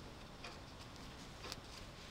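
Faint ticks of metal knitting needles touching as stitches are purled off in a bind-off, a few light clicks over a low background hiss.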